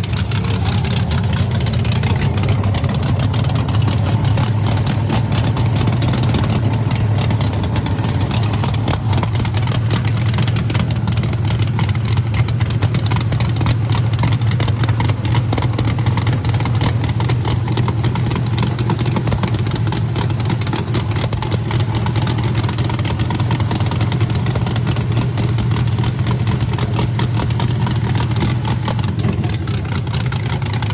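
Loud drag-race car engine idling steadily, with no big revs.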